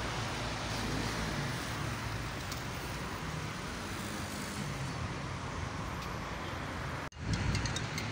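Steady road-traffic noise, a continuous hum and rush of passing cars. About seven seconds in it breaks off abruptly and gives way to a quieter background with a few short clicks.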